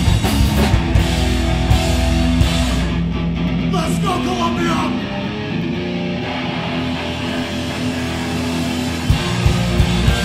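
Hardcore punk band playing live through a club PA: distorted electric guitars over a drum kit. About three seconds in the drums and low end drop away, leaving the guitars ringing, and the drums come back in just before the end.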